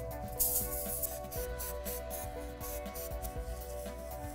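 Background music with steady held tones, and about half a second in a brief hiss of granulated sugar pouring onto aluminium foil.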